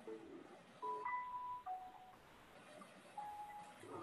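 Electronic conference-call tones: a beep that steps down to a lower beep about a second in, then a shorter single beep near the end.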